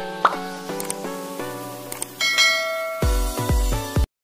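Short outro music jingle of bright chiming notes with a few popping clicks, then several deep thumps near the end before it cuts off suddenly.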